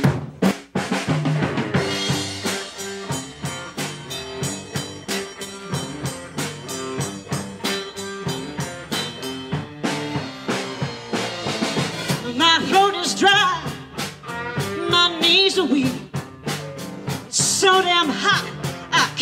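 A rock band playing live, opening with drum kit, electric guitars and bass guitar. A woman's lead vocal comes in about twelve seconds in.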